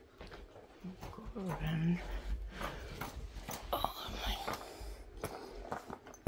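A German Shepherd fetching an item close by, with a woman's quiet murmured coaxing.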